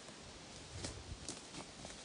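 Quiet outdoor background hiss with a few soft, short clicks and rustles.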